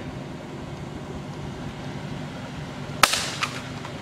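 An iPad in a rugged case hitting asphalt after a drop of about 60 feet: one sharp crack about three seconds in, followed by a few lighter clatters as it bounces.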